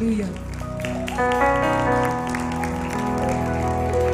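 Live worship band playing soft held keyboard chords over bass and guitar, growing fuller about a second in. Voices and scattered applause sit underneath.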